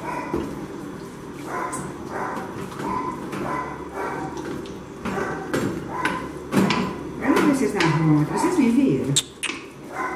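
A long spoon stirring a thick shredded-chicken and flour filling in an aluminium pot, knocking and scraping against the pot again and again, with voices in the background.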